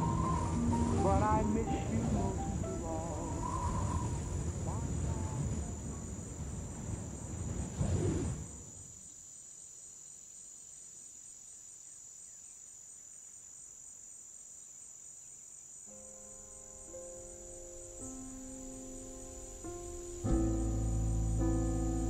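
A slow vocal jazz ballad ends in the first third. Then a steady, high, thin chorus of crickets fills the lull, and new music with soft, held chords comes in about two-thirds of the way through, swelling near the end.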